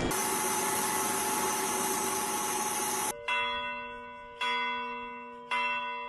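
A steady noise with a faint tone runs for about three seconds and cuts off suddenly. Then a church bell strikes three times, about a second apart, each stroke ringing on and fading before the next.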